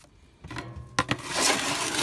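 Charcoal lumps and wood ash being raked by a gloved hand in a metal grill tray: a sharp click about a second in, then loud steady scraping and rustling.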